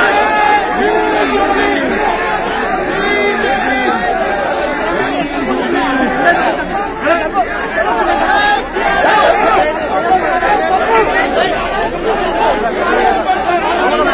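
A dense crowd of men talking and shouting over one another, many voices at once, loud and without a break.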